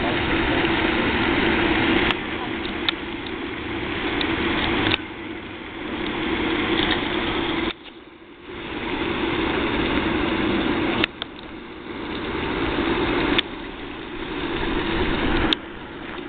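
A steady mechanical drone, like an engine or motor running, that jumps abruptly in level several times with a sharp click at each change.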